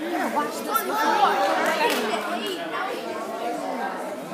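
Overlapping chatter of several voices, adults and children talking at once, with no single clear speaker.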